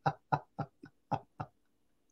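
A person laughing: a run of short, separate laughs, about three a second, that fade away and stop about a second and a half in.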